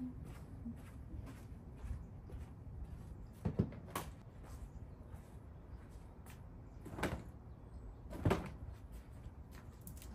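A few sharp knocks and bumps from something being handled, such as a door or cupboard: a thump about three and a half seconds in with a click just after, then two more thumps around seven and eight seconds, over a low steady background hum.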